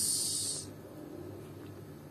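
The drawn-out hissing 's' ending a spoken word lasts about the first half second, then fades into quiet room tone.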